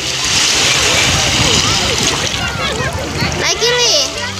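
Splashing of a toddler's feet running through shallow surf, over the wash of small waves on the sand. A child's high-pitched voice calls out in the second half.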